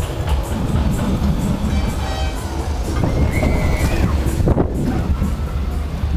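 17-metre SBF Visa drop tower dropping its seat carriage, heard from on board: a loud, steady low rumble of wind and running gear on the microphone, with a brief high squeal about three seconds in. Fairground music plays over it.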